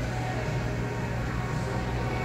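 Schindler hydraulic elevator running as its glass car rises, a steady low hum.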